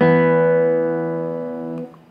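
Nylon-string classical guitar sounding two notes together, the E on the fourth string at the second fret with the open B string. The pair rings and fades, then is damped abruptly near the end.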